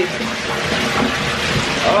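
Water running steadily from a bathtub tap into a tub that is being filled.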